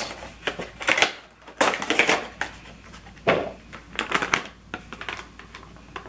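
A cardboard Funko Pop box being opened and its clear plastic insert and bagged vinyl figure handled: irregular plastic crinkling and cardboard rustling, with several sharper crackles.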